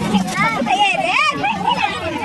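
Children's voices calling out and chattering, high-pitched and swooping up and down in pitch.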